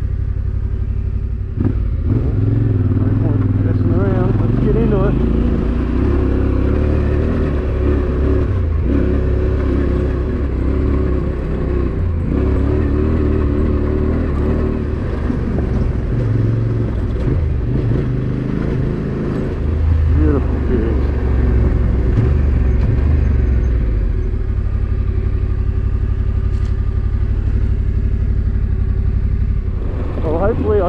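Motorcycle engine running as the bike is ridden along a dirt track. Its pitch and level rise and fall with the throttle, louder for a few seconds at the start and again around two-thirds of the way through.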